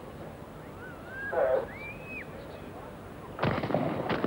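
Stadium crowd hushed for the start, a brief voice about a second and a half in, then the starter's pistol fires about three and a half seconds in, sending the sprinters away on a false start.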